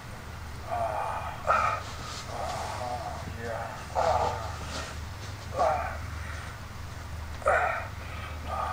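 A man's moans and gasps from a pornographic video playing on a laptop, coming in short bursts every second or two, over a steady low hum.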